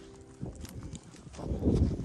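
Footsteps crunching in snow, irregular knocks at first, turning into a louder rumble of steps and scarf or hand rubbing on the microphone about halfway through. The tail of background music dies away in the first half second.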